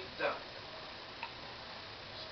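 A man's voice from a television drama finishes a sentence with one word, then a pause filled with steady faint hiss and a single small click about a second in.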